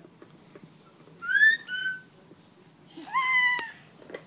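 A baby's high-pitched squeals: a rising two-part squeal about a second in, then a longer squeal near the end, with a sharp click during it.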